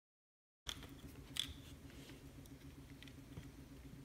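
Silent at first, then faint clicks and light scraping of hands handling a small brushless servo motor's housing and its feedback circuit board, over a faint steady low hum.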